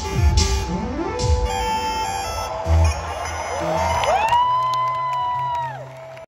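Live electronic synthesizer music: a few short electronic drum hits with falling pitch at the start, then held synth notes. About three and a half seconds in, several notes slide up and hold, and near the end they glide down together.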